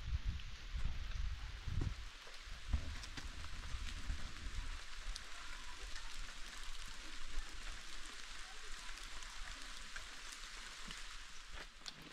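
Light rain falling, a steady hiss of fine drops with faint scattered pattering, under a low rumble that fades out after the first few seconds.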